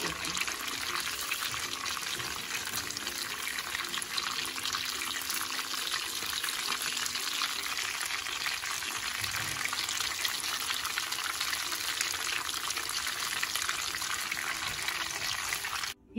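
Bread-crumbed chicken drumsticks deep-frying in hot oil: a steady, dense sizzle and crackle.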